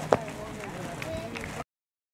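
A single sharp knock of a hard cricket ball striking a wooden cricket bat just after the delivery. Distant players' voices follow, then the sound cuts off abruptly.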